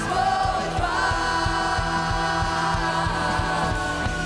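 Live worship band: several women's voices sing long held notes together over electric guitar and a steady low beat.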